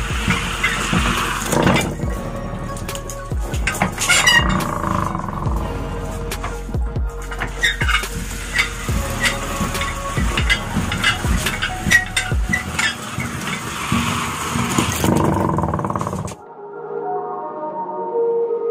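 Hand-operated iron rubber-sheet roller mill working as a coagulated latex sheet is fed between its ribbed rollers: irregular knocks, clicks and creaks of the gears and rollers, with music underneath. About sixteen seconds in the machine noise cuts off and only soft ambient music remains.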